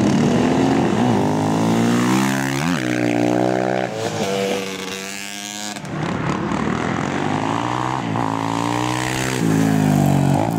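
Off-road motorcycle engines being ridden past, the engine pitch repeatedly climbing with throttle and gear changes, then falling away.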